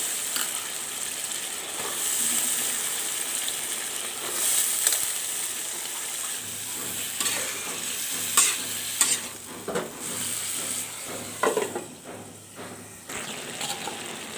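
Vegetables frying in a spiced curry in a wok-like karai, sizzling steadily as a metal spatula stirs them. A few sharper scrapes of the spatula against the pan come in the second half.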